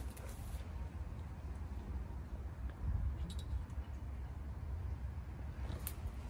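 Low, uneven outdoor rumble with a few faint clicks and taps from hands working in a bus's engine bay, checking the power steering fluid.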